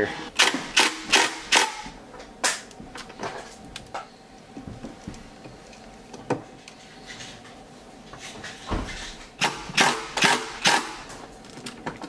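Sharp clicks and knocks of hand tools and hardware being handled at a battery bank's terminals. There is a run of about four clicks at the start, scattered ones after that, a dull thump and another quick run near the end, over a faint steady hum.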